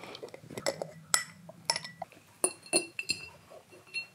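A husky's teeth knocking against a glass jar as he licks and bites at its mouth: about six sharp clinks, several leaving a short glassy ring, with a last knock near the end.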